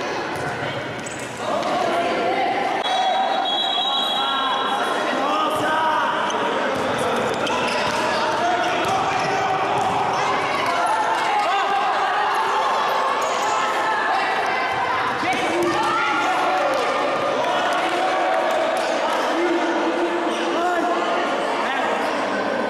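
A futsal ball being kicked and bouncing on a wooden gym floor, mixed with many voices shouting from the players and spectators and echoing through a large indoor hall.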